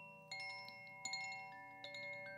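A hand-held koshi chime being gently swung, its clapper striking the tuned metal rods inside the bamboo tube three times, each strike leaving several clear bell-like notes that ring on and overlap. The ringing is faint.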